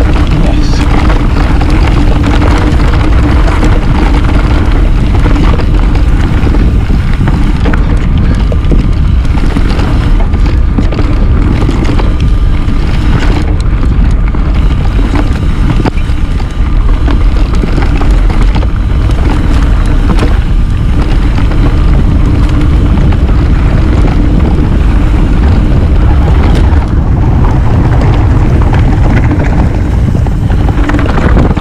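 Wind buffeting a handlebar-mounted camera's microphone, with the tyres of a Trek Remedy mountain bike rumbling over a dirt singletrack as it descends at speed; loud and steady throughout.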